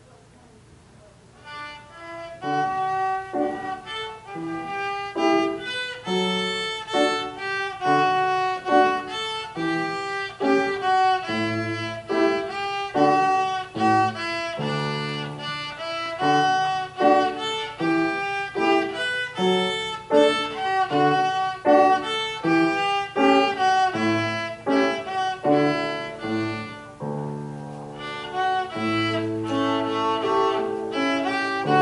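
Violin playing a classical piece with piano accompaniment. The music starts about a second and a half in, after a quiet moment.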